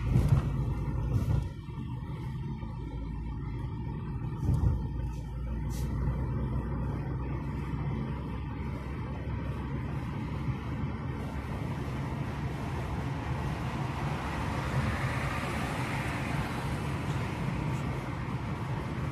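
A car's engine and road noise heard from inside the cabin while driving slowly: a steady low rumble with a few thumps in the first five seconds. Tyre hiss grows louder in the second half.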